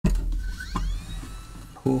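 Hot air rework station's blower starting up: a rising whine over a rush of air that then holds steady. It is heating the new Realtek ALC655 audio chip to reflow its solder onto the motherboard pads.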